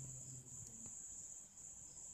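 Crickets chirping faintly: a steady high-pitched trill broken by short pauses.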